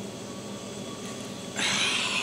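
Quiet room tone, then, about one and a half seconds in, a short rustling hiss as a rubber gas mask is pulled up off the head.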